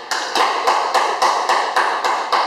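A quick, regular series of sharp taps or knocks, about five a second, each with a brief ring after it.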